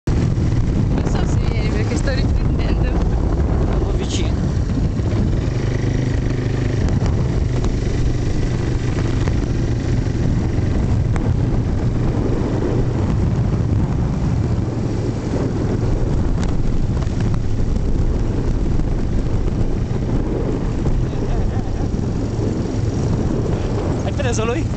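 Quad bike (ATV) engine running steadily under way, a constant low hum that holds its pitch throughout.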